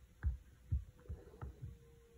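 Soft low thuds, five or six in two seconds at uneven spacing, over a faint steady hum.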